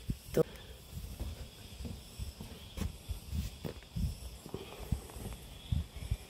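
Footsteps on a mountain path with handling noise from a hand-held phone: faint, irregular low thumps and scuffs, with a few brief clicks.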